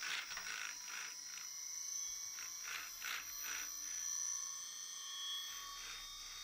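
Brushless motor spinning a 3D-printed gyroscope flywheel, a steady high-pitched whine, with faint repeated rustling as the curved hull rocks back and forth.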